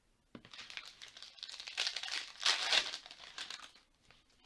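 A foil trading-card pack wrapper being torn open and crinkled by hand. The crackling starts about a third of a second in, is loudest about two and a half seconds in, and fades just before the end.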